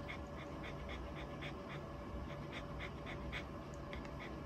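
A puppy panting softly with its mouth open, quick even breaths at about four a second.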